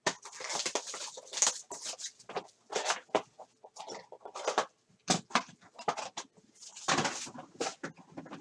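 Trading-card box being unwrapped and opened by hand: plastic wrapper crinkling and cardboard scraping in a run of irregular rustles, loudest about seven seconds in.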